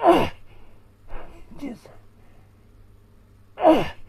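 A man's strained vocal exhalations from the exertion of a deep prone backbend stretch. Two loud cries fall in pitch, one at the start and one near the end, with quieter short ones about a second in.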